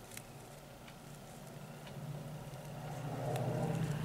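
A low, steady hum that grows gradually louder over the second half, with a few faint ticks from a small plastic bag of acrylic drills being handled.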